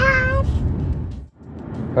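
A toddler's short, high-pitched vocal call, held about half a second, over the low rumble of road noise inside a moving car. The rumble cuts out abruptly a little past the middle and comes back quieter.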